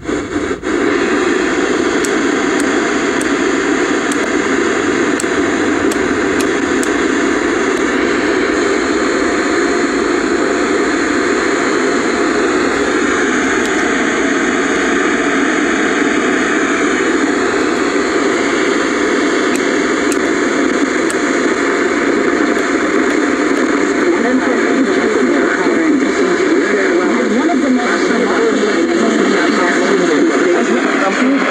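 Steady static hiss from the speaker of a 1977 Zenith Chromacolor II portable colour TV tuned to a channel with no signal, its screen full of snow.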